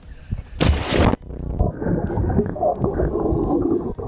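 A body plunging into a swimming pool, a splash about half a second in, then muffled bubbling and churning water heard through the camera's submerged microphone.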